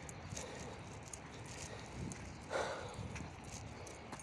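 Footsteps of a person walking on a dirt path strewn with dry leaves, fairly quiet, with a brief louder sound about two and a half seconds in.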